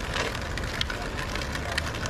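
Steady outdoor background noise: a low rumble and hiss, with a few faint clicks.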